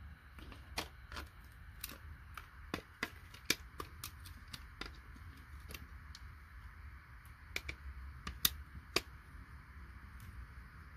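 Irregular sharp clicks and snaps of small IC chips being pried and broken off a circuit board with a hand tool, roughly two a second, with one louder snap late on.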